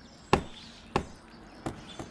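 Three short, sharp knocks about two-thirds of a second apart.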